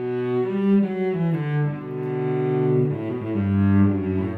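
Solo cello played with the bow: a phrase of changing notes, one held longer in the middle, dropping to a low note near the end.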